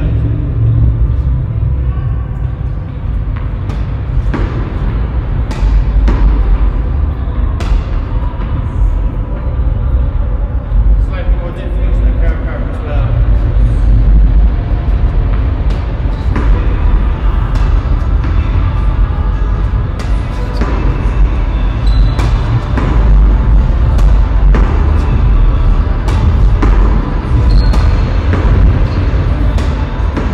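Tennis ball struck by a racquet and bouncing, a series of sharp, irregularly spaced pops that echo off bare concrete, over a steady low rumble.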